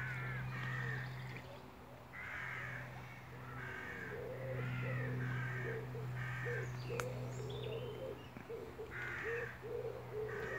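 A bird calling over and over, short calls about once a second, with a steady low hum underneath and a single sharp click about seven seconds in.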